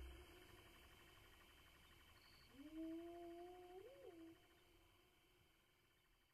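A faint, low, drawn-out animal-like call. It rises at the start, holds its pitch, and gives a short wobble up and down just before it stops.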